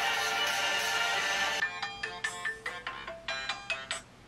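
A held musical chord, then from about one and a half seconds in a smartphone alarm melody of short, bell-like notes that stops at the end.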